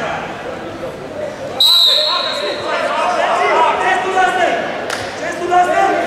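A referee's whistle blown once as a short, shrill blast about a second and a half in, restarting the wrestling bout after a stoppage.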